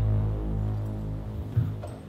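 Low, droning background music with a steady bass tone that fades out about one and a half seconds in, followed by a short knock.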